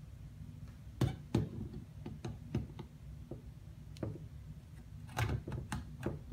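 Irregular clicks and knocks of an 18-55 mm kit lens being handled and pressed against a Canon DSLR body's lens mount, in fumbling attempts to fit it before it has seated. The sharpest knocks come about a second in and in a cluster near the end.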